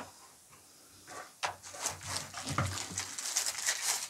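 Thin frosted plastic sleeve crinkling and rustling as a power bank is pulled out of it, starting about a second in, with irregular sharp crackles.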